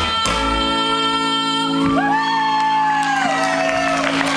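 A live band holding a song's closing chord: two sharp drum strikes right at the start, then a singer's long held note from about two seconds in that slides down as it ends.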